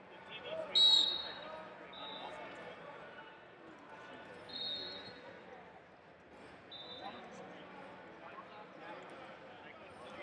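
A referee's whistle blast about a second in, starting the bout. Later come a few shorter, fainter high chirps at the same pitch, all over a murmur of voices echoing in a large hall.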